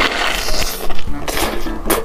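Close-miked crunching of a deep-fried egg with crispy, lacy fried edges being bitten and chewed: a run of crisp crackles, loudest about a second in and again near the end, over background music.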